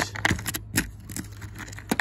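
Fingers rummaging in a clear plastic compartment organizer box: coins and small iron bits clicking against the plastic and against each other, about half a dozen separate clicks at uneven intervals.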